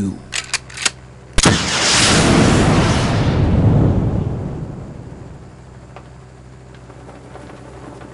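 Sci-fi ray-gun blast sound effect: a few quick clicks, then a sharp crack about a second and a half in, followed by a long rushing blast that swells and dies away over about four seconds.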